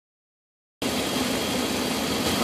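Dodge Ram 1500 pickup's engine idling steadily with the hood open; the sound cuts in suddenly a little under a second in.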